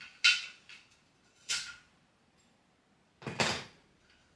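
Handling noises as an Obon lantern and its stand are taken down and packed into boxes: a few short, crisp clattering rustles, the fullest and deepest, with a thump, about three seconds in.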